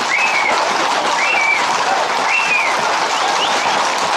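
Dense, steady clatter of many horses' and Camargue bulls' hooves on a paved street. Three short high whistle-like calls, each rising and falling, come about a second apart.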